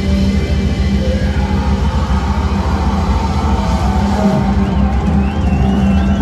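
A post-metal band playing loud live, a dense, sustained wall of distorted guitar and bass holding a steady low note.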